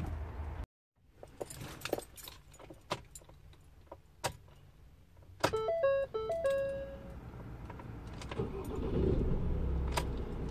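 Keys jangling and small clicks in a Ford Transit's cab, then a short run of stepped dashboard chime tones about five and a half seconds in. Near the end a steady low rumble comes up as the van's engine starts and idles.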